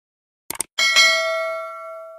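Subscribe-button sound effect: a quick double mouse click about half a second in, then a bright notification-bell ding that rings on and slowly fades away.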